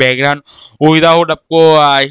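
Speech only: a man talking in Hindi, with a brief pause.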